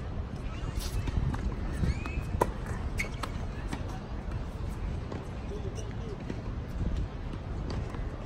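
Wind rumbling on the microphone, with scattered sharp knocks of a tennis ball bouncing on a hard court and being struck by rackets.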